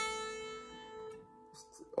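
A single guitar note on the high E string at the fifth fret, an A, ringing out and fading away, dying to near silence after about a second and a half.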